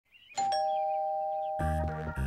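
Two-tone doorbell chime: a higher ding and then a lower dong, both ringing on. Music with a bass line comes in about three-quarters of the way through.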